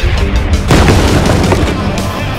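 A loud explosion boom about half a second in, mixed over background music.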